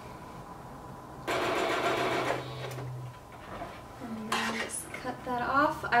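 Singer electric sewing machine running in one short burst of about a second, stitching a fabric seam, with its motor hum trailing on a little longer.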